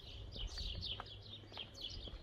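Small birds chirping busily, many short downward-sliding chirps a second, with footsteps on pavement faintly underneath at an even walking pace.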